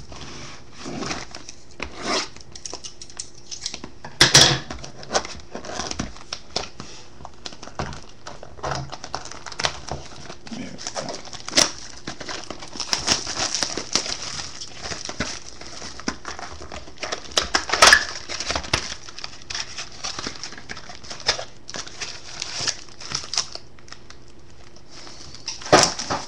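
Plastic wrapping crinkled and torn off a cardboard trading-card box, and the box opened by hand, in irregular crackles and clicks, with the loudest rips about four seconds in and again near eighteen seconds.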